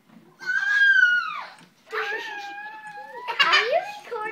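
A toddler's squealing vocal sounds, not words: a long, high squeal that falls away, then a held call, then a rising squeal near the end.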